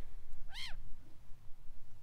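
A gull giving a single short call about half a second in, its pitch rising and falling in one arch.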